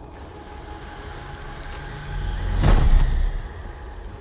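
Film-trailer sound design: a steady dark drone with faint held tones. About halfway in, a deep rumble swells into one loud hit, which then falls away.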